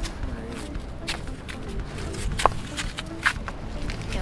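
Footsteps on concrete steps going down a steep cliff path: a few irregular scuffs and slaps, with faint voices of other people in the background.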